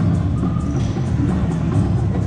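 Tarzan video slot machine playing steady drum-driven music, the machine's bonus-feature music after it has awarded 15 free games.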